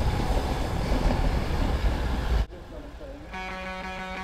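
Wind buffeting a handlebar-mounted camera's microphone as a road bike rolls over cobblestones, a dense low rumble that cuts off suddenly about two and a half seconds in. Guitar-led background music with held notes starts near the end.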